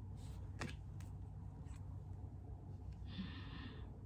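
Quiet room with a low steady hum, a few faint clicks, then a short soft swish near the end as a tarot card is laid down on the table.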